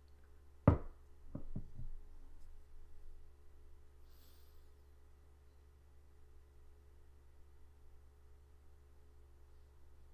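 A single sharp knock, followed about a second later by three lighter clicks, over a faint steady hum.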